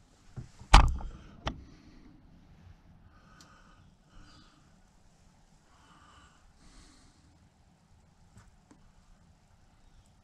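Sharp knocks from hands and a small tool handling a wooden model ship's yardarm and rigging, the loudest about a second in and a second one shortly after, then slow breaths through the nose close by and a couple of faint ticks near the end.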